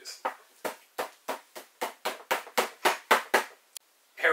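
A quick run of sharp hand slaps, about five a second, stopping about three and a half seconds in.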